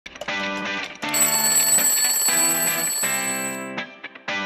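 Theme music in a series of held chords, with a mechanical twin-bell alarm clock ringing over it from about a second in until shortly before the end.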